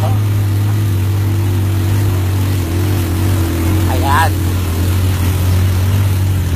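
Small motorcycle engine running steadily at a constant speed while riding, a loud, even low drone.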